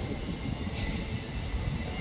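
Steady low rumble and hiss of background noise, with a faint, steady high whine running through it.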